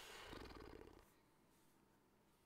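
A man's short, breathy, low creaky vocal sound, an exhale or murmured 'hmm', lasting under a second at the start.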